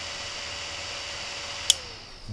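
A small DC cooling fan running with a steady hum, then a single sharp relay click about 1.7 seconds in as the Wi-Fi relay module switches off; the fan's tone then falls as it spins down.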